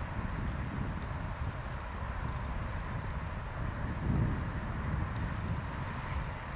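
Open-field outdoor ambience: a steady low rumble with a brief louder swell about four seconds in.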